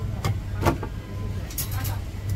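Two light knocks on a wooden chopping block in the first second, with fainter clicks near the end, as a cooked chicken is handled and cut with a cleaver; a steady low hum runs underneath.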